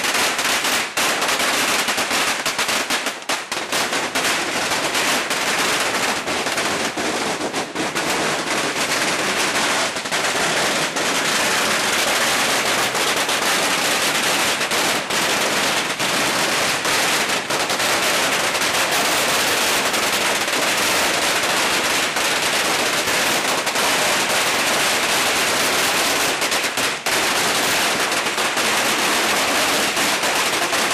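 Long strings of firecrackers going off in a dense, unbroken rapid crackle of small bangs that does not let up.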